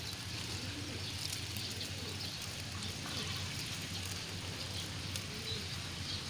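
Outdoor garden ambience: a steady low background hum and hiss with a few faint dove coos.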